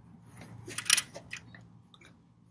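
A few light metallic clicks about a second in, from a wrench being worked on a fuel-pump mounting bolt as it is turned into the engine block to clean out dirty threads.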